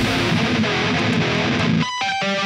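Heavy metal-style song: distorted electric guitar playing without the heavy bass and drums, breaking near the end into a single ringing note.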